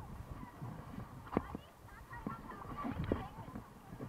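A few irregular knocks and bumps, with faint voices in the background, most of them in the second half.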